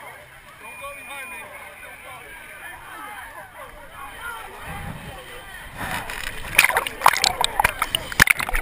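Background chatter of many voices, then from about six seconds in, loud, close splashing and sloshing of muddy water right at the camera as the wearer enters the pit.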